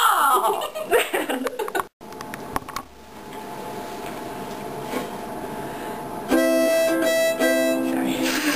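A harmonica starts playing steady held chords about six seconds in, after a stretch of low room noise. Before that there is a brief moment of laughter with fumbling sounds, and a sudden break in the sound just before two seconds in.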